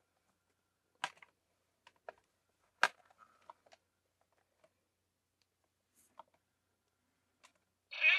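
A handful of separate sharp clicks and light taps of hard plastic as a toy laser-blade sword is handled and seated in clear plastic display hands, the loudest about three seconds in. Right at the very end the blade's electronic sound effect starts as it lights up.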